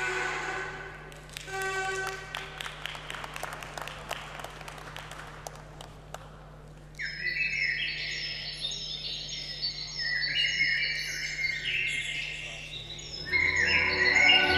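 Audience applause with two short pitched tones near the start; the clapping thins out about six seconds in. Quiet, high, stepping melodic tones of music follow, swelling into louder, fuller music just before the end.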